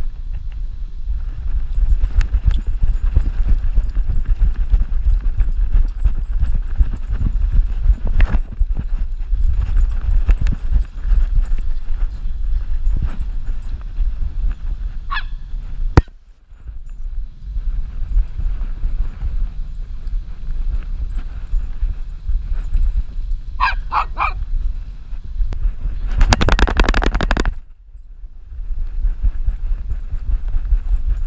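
Low rumbling, rubbing and jostling from an action camera strapped to a dog as it runs and plays. A sharp knock comes about halfway, short high calls sound around the middle and three in quick succession later on, and there is a loud burst of rustling for about a second and a half near the end.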